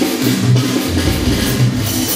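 A live band playing amplified music: a drum kit keeps a steady beat, about two strong bass notes a second, under keyboard and guitars.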